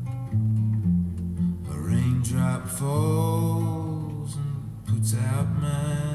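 Nylon-string classical guitar played as accompaniment, a steady run of bass notes and chords. A man's voice comes in with held, sung notes about two seconds in and again near the end.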